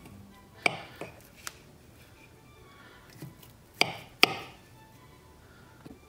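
Knife cutting through boiled potato and clicking sharply on the cutting board: three clicks in the first second and a half, then two more close together about four seconds in.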